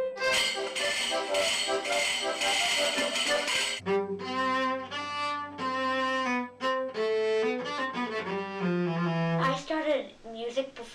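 An accordion playing a short passage with a dense, bright sound, cut after about four seconds to a cello bowing a slow melody of sustained notes.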